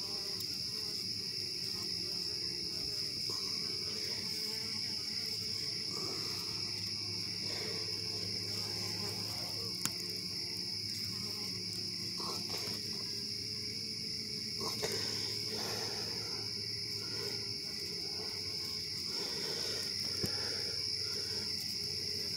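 Crickets chirring at night in one steady, unbroken high-pitched drone, with a faint low hum beneath.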